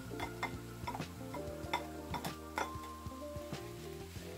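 A spatula clicking and scraping against a cast iron skillet as stir-fried noodles and vegetables are tossed, in many quick irregular knocks, over steady background music.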